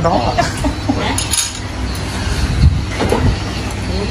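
An electric rice cooker's lid is unlatched and swung open, with a knock about two and a half seconds in. Light clinks of chopsticks and bowls come around it.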